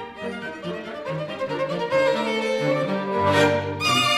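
A string quartet playing a classical piece, violins carrying the melody over a moving cello line. It starts softly and swells to a fuller sound about halfway through.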